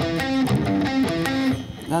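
Electric guitar, tuned down to drop C, playing a riff of short single notes that step between different pitches.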